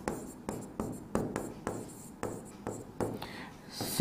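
Pen strokes on a writing board: a run of short, irregular taps and scratches as words are written out.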